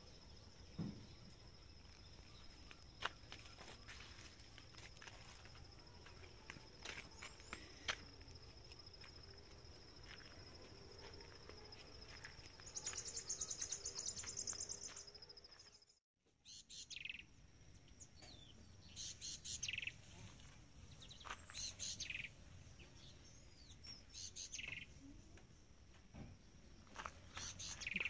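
Faint outdoor garden ambience: a steady high-pitched insect drone, with a louder rapid trill about 13 to 15 seconds in. After a brief dropout near the middle, birds chirp in short repeated calls.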